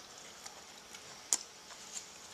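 Quiet room tone broken by a few faint ticks and one sharper click a little past halfway.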